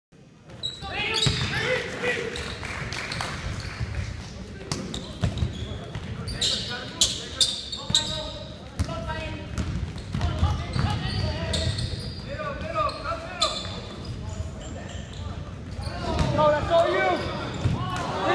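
Basketball game sounds in a gym, echoing: a ball bouncing on the hardwood floor, sneakers squeaking in short bursts, and players and spectators calling out.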